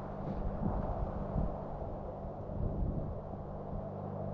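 Airplane engine droning steadily, a low, even hum.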